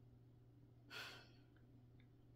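A single short sigh, a breath let out about a second in, over a faint steady low hum in a quiet room.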